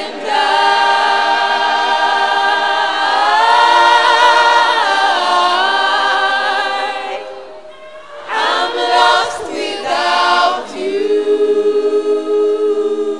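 Worship choir singing unaccompanied, voices only: a long held chord for the first seven seconds, a brief drop, then shorter phrases and another held note near the end.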